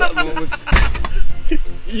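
Men talking and laughing, broken by a sudden loud rushing burst with a low rumble lasting about a quarter of a second, just under a second in.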